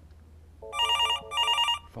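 Electronic telephone ringtone for an incoming call: two short warbling rings of about half a second each, starting under a second in.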